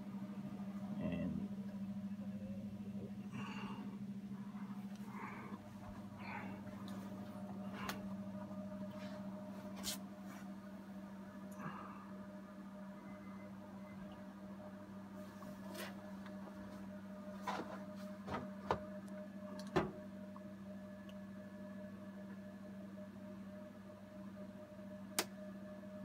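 HP ProLiant ML350p Gen8 tower server running, its fans giving a very quiet steady hum with a constant low tone, and a few faint clicks scattered through.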